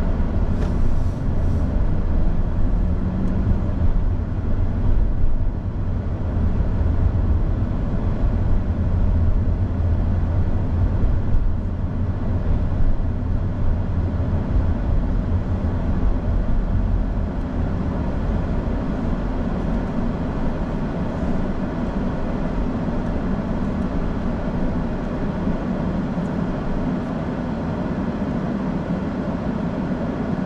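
Car cabin noise while driving: a steady low rumble of engine and road. It eases a little in the second half as the car slows into a traffic queue.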